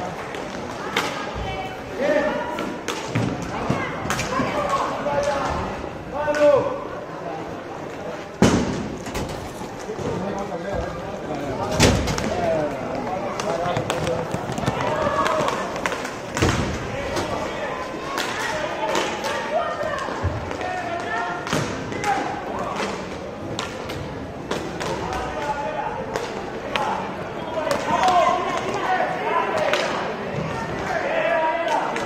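Inline hockey game in an indoor rink: indistinct voices and shouts of spectators and players throughout, with repeated sharp clacks and thuds of sticks and puck against each other and the boards, the loudest about eight and twelve seconds in.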